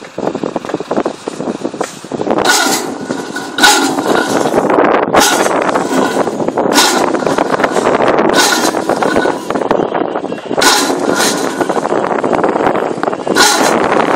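Electric PC strand pusher machine running, driving steel prestressing strand through a duct: a steady mechanical noise that grows louder about two seconds in, broken by sharp metallic clanks every second or two.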